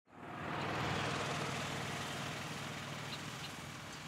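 Steady outdoor background noise that fades in just after the start: an even rushing hiss with a faint low hum beneath it, with no distinct events.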